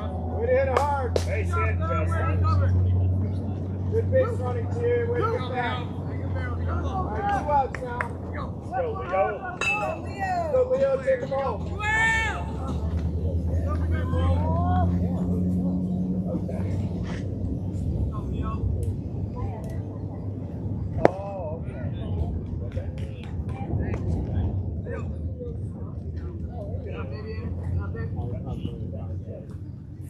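Distant voices of players and spectators calling out and chattering across a ballfield, over a steady low rumble. A single sharp crack about twenty-one seconds in, typical of a baseball striking a bat or the catcher's mitt.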